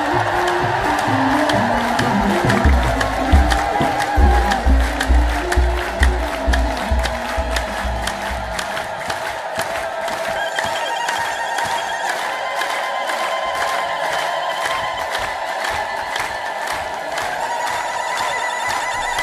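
A large crowd singing and chanting a hymn together to a steady drum beat and rhythmic hand clapping. The drum stops a little past halfway while the singing and clapping go on, with high wavering voices rising over the crowd.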